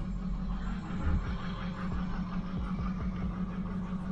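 Ford pickup's diesel engine idling steadily, heard from inside the cab, just after a morning start.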